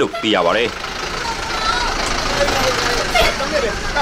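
Police truck's engine running as the truck rolls slowly past, with a low steady rumble. People's voices sound over it, one clearly near the start.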